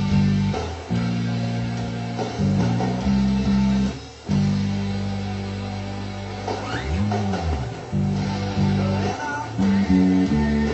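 Electric bass guitar being played: held low notes that change every second or so, with a slide up and back down about seven seconds in.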